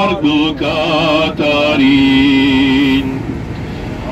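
Armenian church chant sung by a single voice in a slow, melismatic line, holding one long note in the middle before dropping away near the end.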